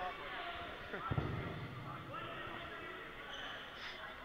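People talking, with a laugh, and a single low thump about a second in, a dodgeball bouncing on the sports hall floor.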